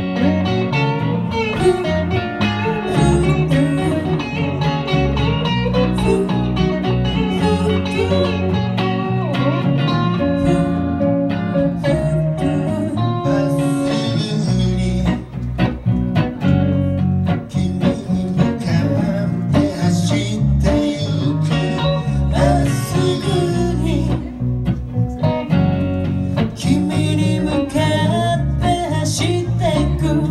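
Live band playing a song: several electric guitars over drums, with a woman singing lead.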